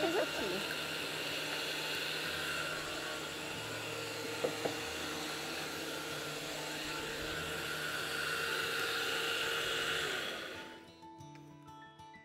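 Electric countertop blender running steadily as it blends watermelon, celery, flaxseed, wheat germ and lemon balm into juice. It winds down and stops about ten and a half seconds in.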